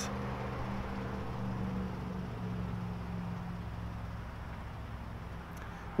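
A vehicle engine running with a steady low hum that eases off slightly.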